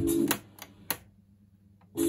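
Music playing through a Sennheiser VKS 203 stereo tube amplifier cuts off as a piano-key button on its input selector is pressed. There are sharp clicks of the key, the loudest about a second in, then near silence until the music comes back at the end.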